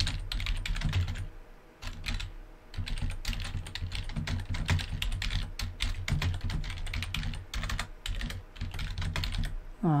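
Rapid typing on a computer keyboard: a dense run of keystrokes with a brief pause about two seconds in.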